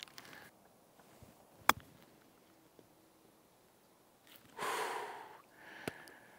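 A golf club striking the ball on a short pitch shot: one sharp click about a second and a half in. Near the end, a breathy "whew" exhale.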